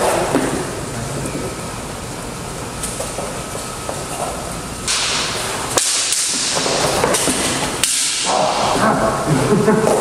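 Armoured fencers working a longsword drill on gym mats: shuffling footsteps, rustling armour and padding, and a few sharp knocks of steel, with a laugh near the end.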